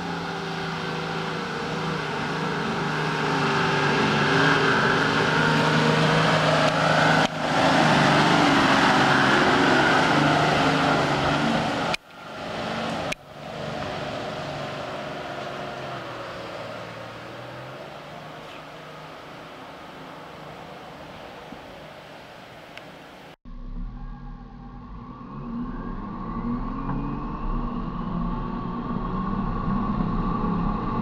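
Four-wheel-drive vehicles driving off-road on a dirt track, engines running in low gear. In the first part one vehicle gets louder as it approaches. In the middle part another drives away. Near the end comes a steady engine rumble with some revving, heard from a camera mounted on a vehicle.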